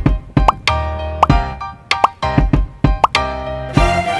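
Upbeat background music with a string of short cartoon 'pop' sound effects, several of them quick rising bloops, about two to three a second. Near the end the music swells into a brighter, fuller passage.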